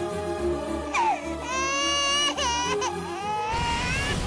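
A little girl crying loudly in long cries that rise in pitch, with short catches between them, over background music with a steady pulse.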